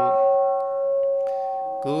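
A single struck bell rings out just as a chanted 'sadhu' ends, a clear steady tone that slowly fades over about two seconds. A man's chanting voice comes back in near the end.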